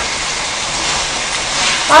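Marinated duck bulgogi sizzling steadily in a frying pan.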